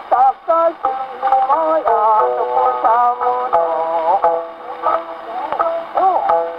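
Taisho-era acoustically recorded Nitto 78 record of an ukiyo-bushi kouta played on a Victor Victrola acoustic gramophone: a geisha singing with wavering held notes over plucked shamisen accompaniment. The sound is thin and narrow, with record surface noise and clicks.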